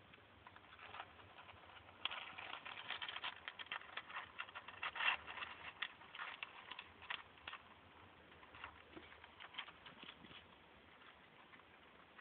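Wood-chip bedding rustling and clicking faintly as a shedding corn snake pushes its way through it, rubbing off its old skin. A dense run of small clicks lasts several seconds, then a few scattered clicks follow.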